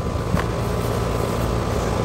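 Trane XR outdoor air-conditioning condenser running: a steady low hum from the compressor under the whir of the condenser fan.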